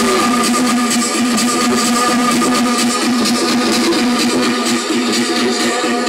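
Loud electronic dance music from a DJ set played over a club sound system, with a steady beat.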